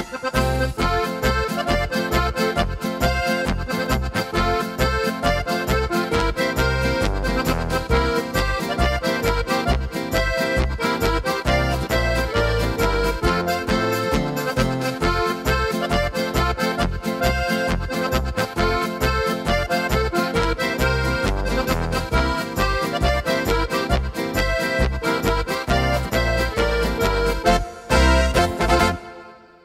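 Korg Pa5X Musikant arranger keyboard playing an Oberkrainer polka march: an accordion-voice melody over the style's automatic accompaniment, with its bass runs and a steady, even beat of bass pulses.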